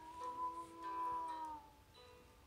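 A man singing one long wordless note over acoustic guitar, heard through a laptop speaker on a video call. The note holds steady, then slides down and fades near the end.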